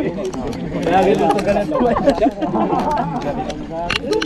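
Several people talking over one another, with a laugh near the end.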